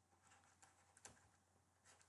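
Near silence with a few faint taps of a stylus on a pen tablet during handwriting.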